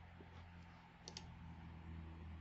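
Near silence with a faint low hum, broken about a second in by two quick faint clicks of a computer mouse button.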